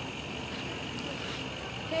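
Steady outdoor street background noise with distant vehicle sound, and a man's voice calling out "hey" right at the end.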